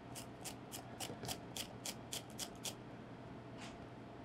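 A small green chili being shaved on a small white handheld slicer: about ten quick, even scraping strokes, roughly four a second, stopping a little before three seconds in.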